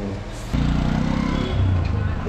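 A motor vehicle engine running in street traffic, starting abruptly about half a second in.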